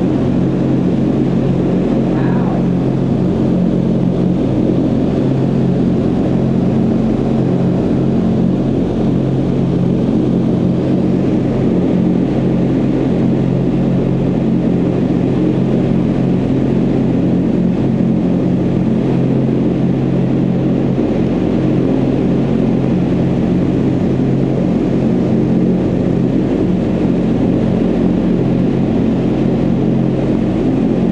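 Indoor vertical wind tunnel in full operation: a loud, steady rush of air from below with a constant low fan hum.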